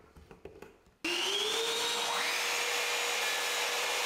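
Bosch sliding mitre saw and its attached dust extractor starting up about a second in and running steadily at speed, a higher whine rising in a second later; no cut is heard.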